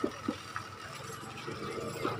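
Faint, steady outdoor background noise with two light clicks near the start.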